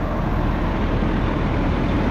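Steady low rumble of motor vehicle noise, with no distinct events.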